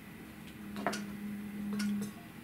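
A man humming a steady, held 'mmm' of hesitation before he finds his next word, growing a little louder near the end, with two light clicks about a second apart.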